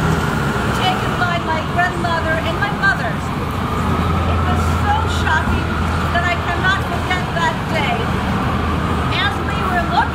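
A woman reads a statement aloud over city street traffic. A large truck's low engine rumble rises as it passes, about four to six seconds in.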